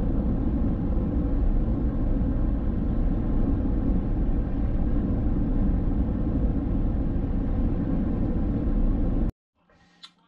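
A car driving: steady road and engine rumble that cuts off suddenly about nine seconds in.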